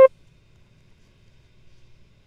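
A Mellotron V 'Strawberry Flutes' note cuts off right at the start. After it there is only a faint low hum.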